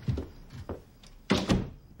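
Wooden door being pushed shut, closing with two sharp knocks in quick succession about a second and a half in, after a softer knock near the start.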